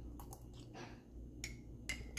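A handful of faint, sharp clicks and light taps from a metal spoon and a ceramic mug being handled while sipping hot chocolate, the sharpest click near the end.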